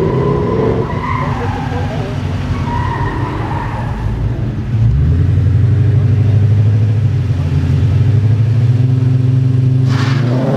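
Two drag cars running at the start line with voices around them; about halfway through the engines come up to a loud, steady held rev, and at the very end they launch with a sharp crack and a rising engine note.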